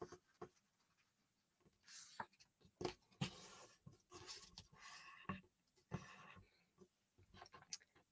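Near silence with faint handling of a sheet of paper: green paper folded in half and its crease pressed flat by hand, giving a few soft, scattered rustles and taps.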